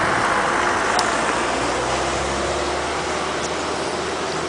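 Road traffic passing nearby: a steady rush of tyre and engine noise, with a low engine hum coming in partway through.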